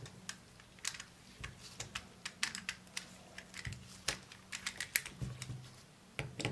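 Irregular small clicks and ticks of a pin spanner and the metal rings of an I50U-1 enlarging lens being handled and turned by hand. A faint steady low hum runs underneath.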